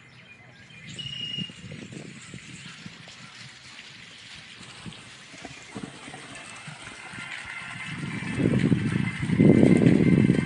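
Footsteps on a paved garden path with faint bird chirps. Near the end comes a louder low rumble of handling noise as a hand reaches to the camera.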